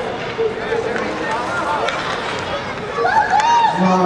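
Voices of spectators and players calling out and shouting during a youth ice hockey game, over the scrape of skates on the ice. The calls grow louder about three seconds in.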